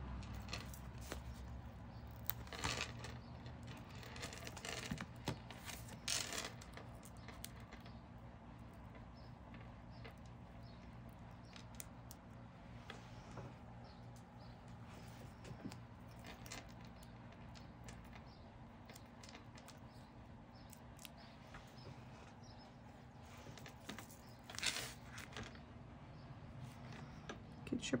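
Quiet paper handling over a faint room hum: soft rustles and light clicks as foam adhesive dots are peeled from their backing sheet and pressed onto a small cardstock banner, with a louder rustle of paper near the end.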